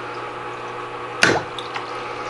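Home aquarium filter or pump running: a steady hum with water trickling and bubbling. One sudden short sound comes a little over a second in.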